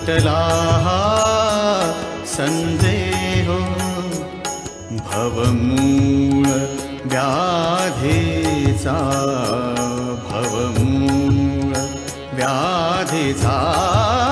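Marathi devotional song to Vitthal (a bhajan): a sung melody that wavers and bends in pitch, over steady low sustained tones and a regular percussion beat.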